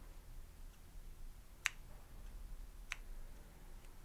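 Scissors snipping the yarn tails of a tied quilt knot: two short, sharp snips a little over a second apart.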